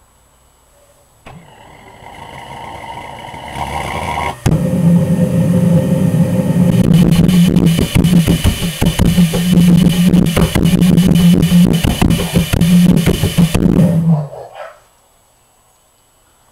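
Home-built pulse-jet resonator engine test-fired. A hum builds for about three seconds, then about four seconds in the engine lights and runs with a loud, steady low buzz full of crackling pops for about ten seconds before cutting out abruptly.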